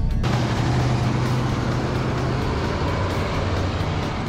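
Vehicle driving on a town street: a steady low engine hum under even tyre and wind noise.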